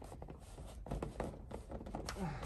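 A few light, scattered knocks and handling noises from hands pushing on a Bugeye Sprite's soft top and its metal top frame, working the top to go over-center.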